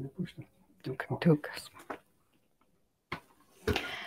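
Quiet, indistinct speech in short broken phrases with pauses between them.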